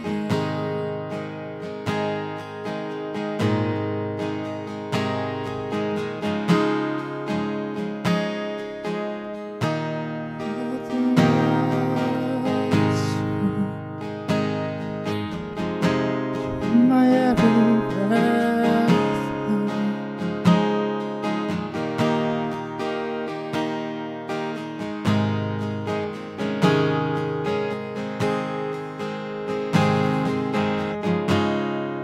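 Acoustic guitar strummed in a steady rhythm, with a man singing to it, his voice clearest in the middle stretch.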